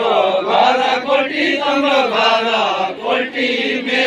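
A group of men singing a Deuda folk song together in a loud, chant-like chorus, many voices wavering in pitch.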